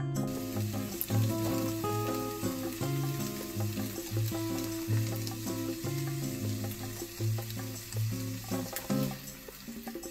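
Miso-marinated beef sizzling as it fries, a steady crackling hiss, under light background music.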